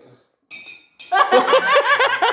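A short high clink about half a second in, then from about a second in a man laughing hard: a loud, quick, rhythmic run of ha's.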